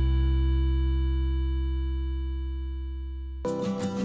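Background music: a held low chord slowly fades, then about three and a half seconds in a new piece of plucked guitar notes starts.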